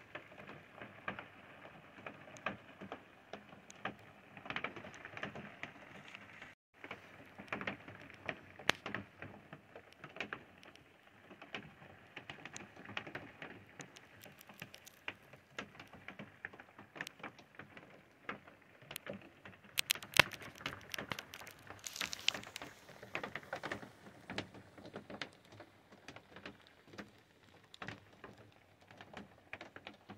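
Light rain pattering: a dense run of irregular small taps, with a louder flurry about twenty seconds in.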